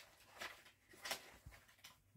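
Faint rustling and a few light clicks of a CD case and its paper booklet being handled, close to near silence.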